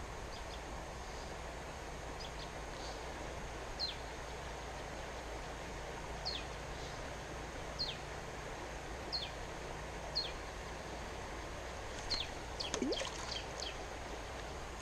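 Steady rush of a flowing stream, with a bird repeating a short high falling chirp every second or two, more often near the end.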